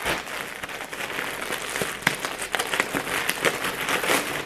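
Plastic packaging bag crinkling and rustling as a parcel is unwrapped by hand, with many small crackles.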